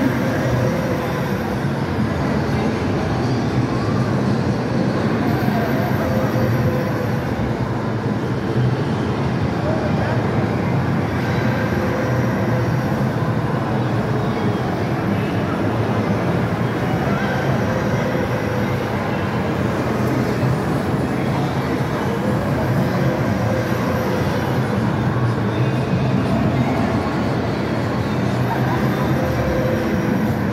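Steady rumble of an elevated ride car rolling along its track, running evenly throughout, under the general din of an indoor arcade.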